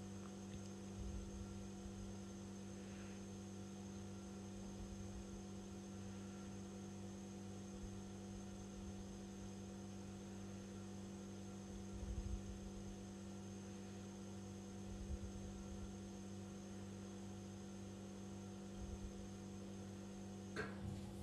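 Quiet, steady electrical mains hum, with a few faint low thumps now and then.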